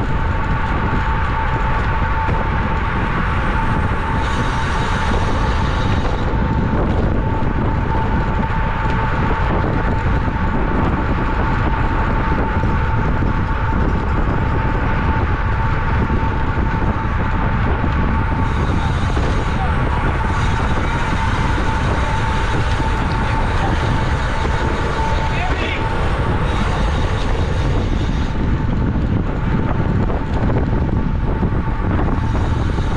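Wind rushing over the microphone of a bike-mounted camera on a road bike racing at about 30 mph, with a steady high-pitched hum running underneath.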